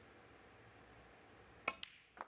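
Snooker shot on the pink: the cue strikes the cue ball and the cue ball hits the pink, two sharp clicks in quick succession near the end, over a quiet arena hush.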